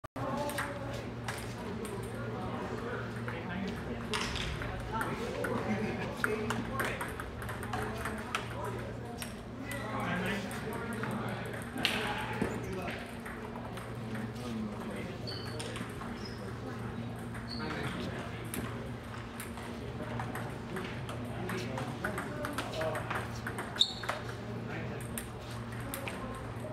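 Table tennis balls clicking off paddles and tables, irregular strikes from rallies at several tables at once, over a steady low hum.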